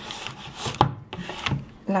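Rubbing and scraping with a few sharp knocks as kitchen dishes and utensils are handled over a glass baking dish, while the prepared cream is brought over to be added.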